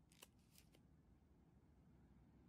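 Near silence, with a few very faint clicks in the first second.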